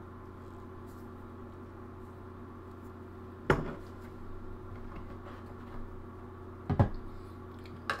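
Two sharp clinks of art-supply containers being closed up and set down on a desk, one a few seconds in and one near the end, over a steady low hum.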